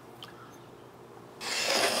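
An ingredient poured into a stand mixer bowl: a steady hiss that starts about one and a half seconds in, after a quiet start.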